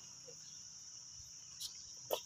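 Steady high-pitched drone of insects singing in the trees, with one short faint click about one and a half seconds in.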